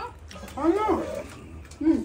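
A person's short wordless vocal sound, its pitch rising then falling, about half a second in, then a brief second vocal sound near the end.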